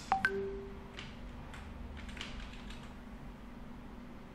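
A few spaced keystrokes on a computer keyboard. Just after the start come two sharp clicks, each with a brief pitched tone, and these are the loudest sounds. A steady low hum runs underneath.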